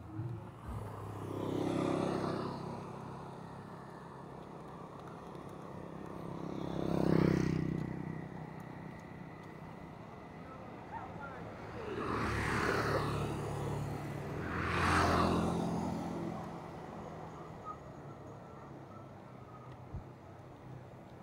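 Motor vehicles passing close by four times, each one's engine and tyre noise swelling and fading over a second or two. Underneath runs the steady wind and road noise of a bicycle ride.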